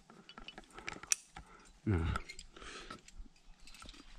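Climbing rope being pulled up and clipped into a quickdraw's carabiner: a run of small clicks and rustles, with one sharp, loud click about a second in.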